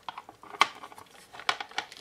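Hard plastic caliper case being handled and its clear hinged lid opened: a few light plastic clicks and rattles.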